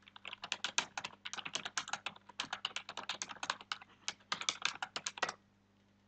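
Fast typing on a computer keyboard: a long run of quick, irregular keystrokes that stops about a second before the end.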